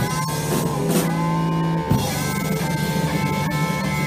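Rock band playing live: electric guitar lines over bass guitar and drum kit.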